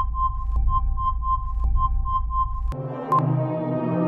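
Quiz-show sound effects over electronic ambient music. A rapid string of short high beeps, about three a second, sounds over a low drone as the countdown runs out and the answer is revealed. A little under three seconds in, it cuts to a different ambient music bed with a single timer tick.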